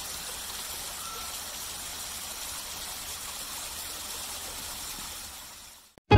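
Steady rush of water from a waterfall cascading over rock, fading out near the end.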